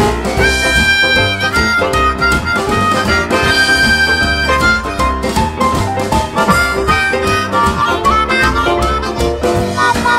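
Instrumental break of a recorded blues-gospel song: a harmonica plays held chords twice in the first half, then shorter melodic phrases, over a band with a steady beat.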